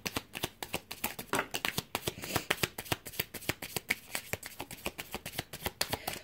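A deck of oracle cards being shuffled by hand: a steady run of quick, light card clicks, several a second.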